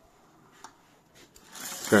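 Zebra roller blind being raised by its bead-chain control: a single click, then a rising chain rattle near the end as the fabric begins winding up into the cassette.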